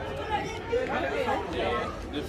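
People talking, with voices chattering throughout.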